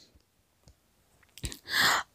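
Near silence, then about one and a half seconds in a single click followed by a short breath in, just before speech resumes.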